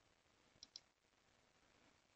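A computer mouse button clicked: two faint, sharp clicks a fraction of a second apart, the button pressed and released, a little over half a second in. Otherwise near silence.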